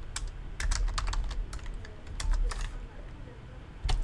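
Computer keyboard typing: a quick run of keystrokes for the first two to three seconds, then the typing stops.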